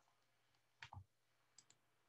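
Near silence broken by a few faint clicks at a computer: a pair just under a second in and two brief ones near the end.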